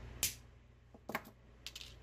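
Small sharp metallic clicks of orthodontic pliers and retainer wire against a stone dental model as the wire is bent. The loudest comes about a quarter second in, another about a second in, and a quick pair near the end.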